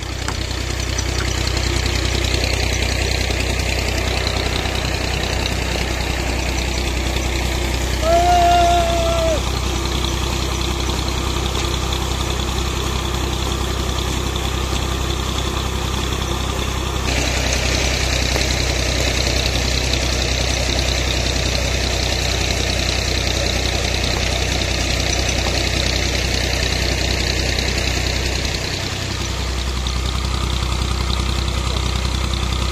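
Tractor diesel engine running steadily at a fast idle, driving a tubewell pump through a flat belt and pulley. A brief high tone sounds about eight seconds in, and a brighter hiss joins from about halfway.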